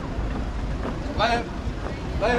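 A voice shouting a short one-syllable marching call in time with the step, once about a second in, over wind rumbling on the microphone.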